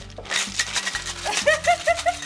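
Stainless steel cocktail shaker being shaken hard, ice rattling inside in a fast, even rhythm of sharp clicks, about four or five a second. Short rising-and-falling chirping vocal sounds join in during the second half, over background music.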